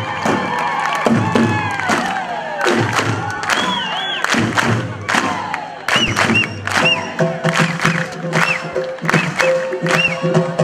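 A large Tunisian double-headed drum (tabl) struck with a stick, with a crowd cheering and shouting over it. From about six seconds in, short high whistles rise and fall above the din and a steady held note comes in.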